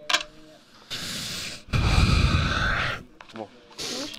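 A man breathes in, then lets out a long, heavy sigh into a close headset microphone, the breath noise reaching down into a low rumble on the mic.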